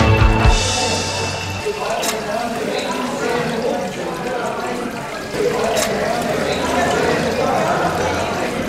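Tap water running into a steel sink while a cuttlefish is rinsed and cleaned by hand under the stream. Background music stops in the first second or two, and voices are heard in the background.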